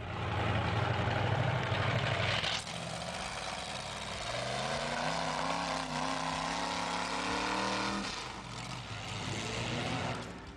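Engine of a Dodge Ram pickup converted to run on tracks, driving through mud: steady at first, then revving with a slowly rising pitch from about four seconds in, easing off near eight seconds.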